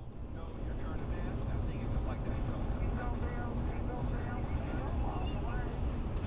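Steady low road and engine rumble inside a moving car's cabin, fading in at the start, with indistinct talking over it.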